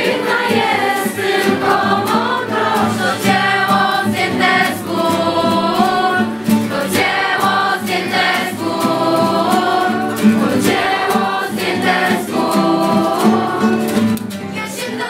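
A large group of young voices singing a song together, accompanied by a strummed acoustic guitar.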